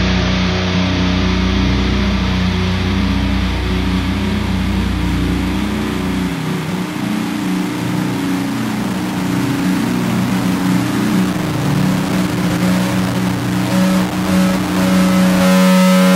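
Heavy-metal outro: a distorted electric guitar note held and left ringing after the last chord, its pitch wavering. A low bass note underneath drops away about six seconds in, and the ringing note grows a little louder near the end.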